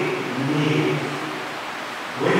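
A man's voice through a microphone, one short phrase in the first second, followed by a steady low hiss.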